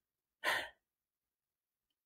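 A single short audible breath from a person, about half a second in; the rest is silence.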